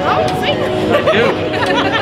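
Several people chattering close by, over steady background music.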